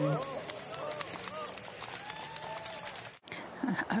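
Spectators' voices calling out over outdoor crowd noise on a golf course, broken by a brief dropout at an edit cut about three seconds in.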